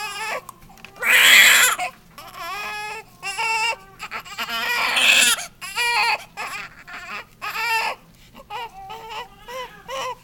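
Newborn baby crying in a series of wavering wails, the loudest about a second in and another around five seconds in, with shorter whimpering cries between.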